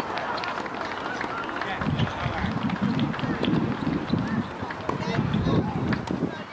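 Indistinct, muffled talking close by, strongest from about two seconds in, with faint scattered clicks in the background.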